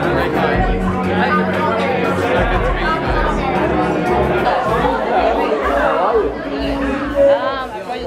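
People chatting over background music in a large room, with a louder voice briefly near the end.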